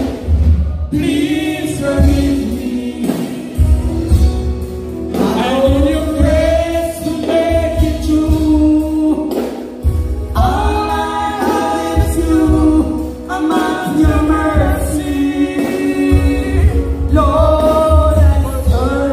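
Live gospel singing by a church choir over band accompaniment with a pulsing bass, the voices holding long notes in phrases a few seconds long.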